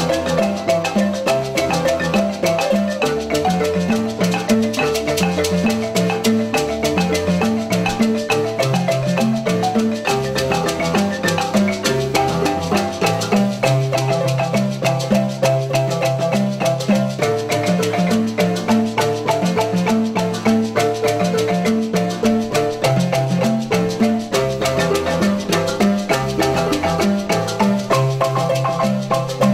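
A marimba ensemble playing a fast, rhythmic song on wooden-keyed marimbas, with a repeating low line from the bass marimba, whose keys are rainbow eucalyptus, under the quicker higher parts.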